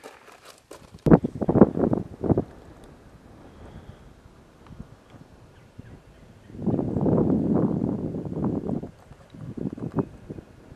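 Wind buffeting the camera microphone outdoors, in rough gusts: a cluster of short blasts about a second in, then a longer sustained gust for a couple of seconds near the end.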